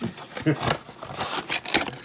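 Cardboard trading-card blaster box being opened and tipped so the foil packs slide out: a few short rustles and taps of card and foil.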